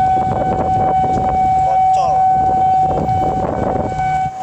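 A railway level-crossing warning alarm sounding one steady, unbroken high tone throughout, over a low traffic rumble, with brief voices.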